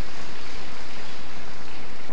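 A steady, even rushing noise with no speech, like amplified hiss and room noise in a large hall.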